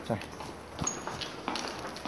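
Footsteps on a hard floor at a walking pace, short knocks about every half second.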